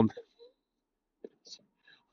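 A man's voice trails off at the end of a word, then a pause with only faint, brief mouth and breath sounds from him, including a small click about a second in.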